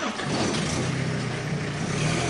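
An engine running steadily with a low hum, under a broad rushing noise.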